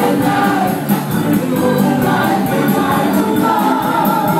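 Live rock band playing, with several voices singing together over a steady beat.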